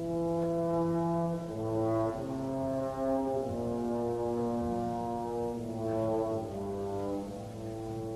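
Opera orchestra with the brass to the fore, playing slow, sustained chords that shift to new harmonies every second or two.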